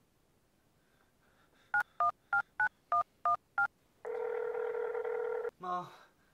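Touch-tone phone keypad dialing a number: seven short two-tone beeps in quick, even succession. A steady ringing tone of the outgoing call follows for about a second and a half, and a voice comes in near the end.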